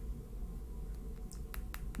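A quick run of small, sharp clicks about a second and a half in, from hands handling tarot cards, over a low steady hum.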